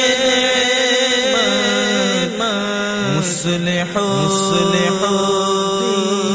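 Several layered voices holding a wordless chant in harmony, with slow bends in pitch: the vocal-only backing of an Urdu manqabat. Two short hiss-like sounds come about three and four and a half seconds in.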